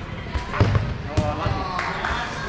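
Dodgeballs being thrown and bouncing hard off the court floor and surroundings: several sharp smacks in quick succession, with players' voices calling out.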